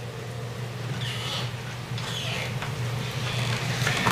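Courtroom room tone: a steady low electrical hum, with a few faint rustles as a man sits down at a table strewn with papers.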